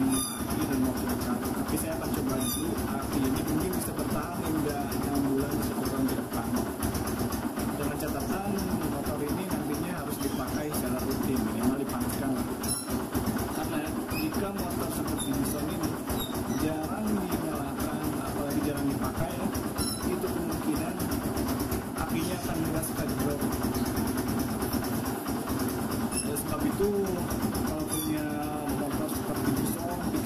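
A Yamaha Byson's single-cylinder four-stroke engine idling steadily, with indistinct voices in the background.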